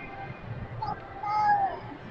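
A young child's brief high-pitched vocal sounds, small whines, the clearest a short falling one near the end, over a low background din.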